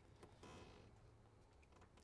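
Near silence: faint background noise in a pause between spoken phrases.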